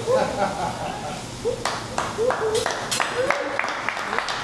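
A few people clapping in a steady rhythm, about three claps a second, starting about a second and a half in, with short voiced exclamations over it.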